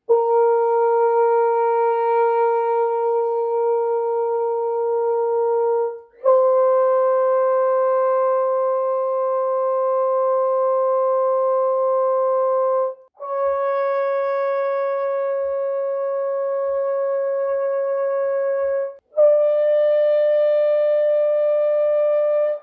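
French horn playing a long-note exercise: four held notes of about six seconds each, each a step higher than the last, with short breaks for breath between them. The exercise is for building embouchure strength for the high range.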